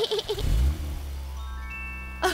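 Low steady hum of a cartoon car's engine, starting about half a second in. From about three-quarters of the way in, a few ringing glockenspiel-like notes enter one after another and hold together as a musical chime.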